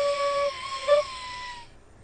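A woman sustaining a high, squeaky, hoarse sung note. It falters briefly about half a second in and sags slightly in pitch before stopping, about two-thirds of the way through. The hoarseness comes from small bumps on the vocal folds caused by voice overuse, which keep the folds from closing fully.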